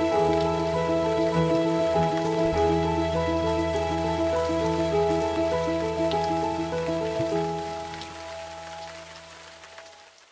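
Background music: a repeating pattern of sustained notes over a held bass, fading out near the end.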